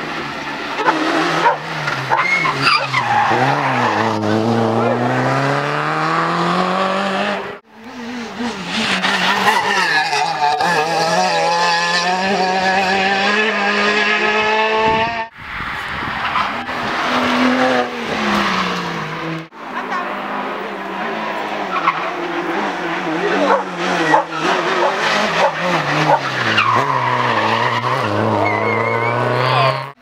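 Rally car engines revving hard on a tarmac stage, several cars in turn, their pitch climbing and dropping with each gear change and lift-off, over tyre noise. The sound breaks off sharply three times as one car gives way to the next.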